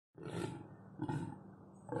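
Deep, rough groaning calls of a rutting deer buck, short and repeated about once a second.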